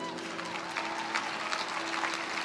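Audience applauding and cheering in a pause of the speech, over a steady low note of background music.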